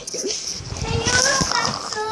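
A young child's high-pitched voice, vocalizing and babbling without clear words, with a few knocks from the phone being handled.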